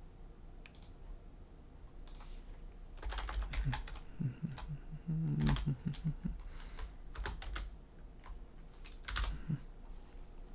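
Scattered soft clicks and taps, like keys or buttons being pressed, busiest from about three seconds in, with faint low murmuring sounds near the middle.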